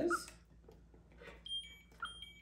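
Handheld pet microchip scanner beeping as it reads a puppy's implanted chip: a short two-note electronic beep about one and a half seconds in, starting to repeat right at the end.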